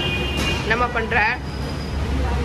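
Busy eatery ambience: a steady low rumble of background noise, with a short high-pitched voice about a second in.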